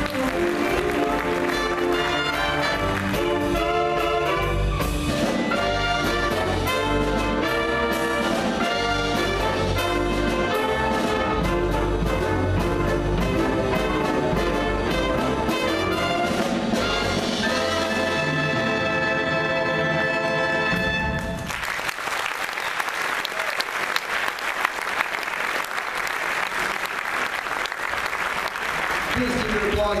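Student jazz big band of saxophones, trumpets, trombones and a rhythm section of piano, guitar, bass and drums playing the end of a swing chart, closing on a long held chord. About two-thirds of the way through the band stops and the audience applauds.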